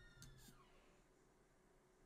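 The faint tail of a single drawn-out cat meow, fading out within the first second, followed by near silence.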